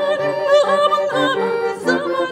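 Hand-cranked barrel organ playing a Turkish karşılama tune from a punched paper roll, with steady reedy chords over a low repeating bass, and a woman's voice singing over it with ornamented, wavering notes.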